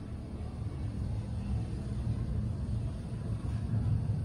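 Thyssen traction elevator car travelling in its shaft, heard from inside the cab as a steady low rumble that grows gradually louder.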